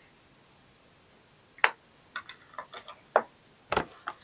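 Small plastic makeup compacts and packaging being handled: a sharp click about one and a half seconds in, a run of light ticks and taps, then a heavier knock near the end as something is set down.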